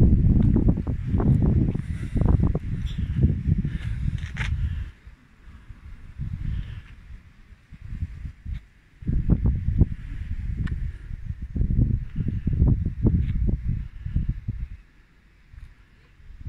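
Wind buffeting the phone's microphone in gusts, a loud, uneven low rumble that drops away for a few seconds about five seconds in and again just before the end.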